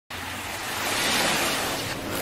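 Ocean surf washing onto a beach: a steady rushing hiss that swells to a peak about a second in and eases off slightly.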